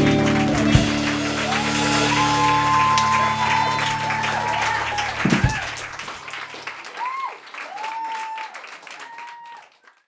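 Small audience applauding and cheering at the end of a song, over a low held chord that stops a little past halfway. The clapping then fades out near the end.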